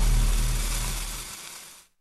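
Ominous low rumble with a hiss over it, the sound-design bed of a TV anti-drug commercial, fading out steadily over about two seconds into silence.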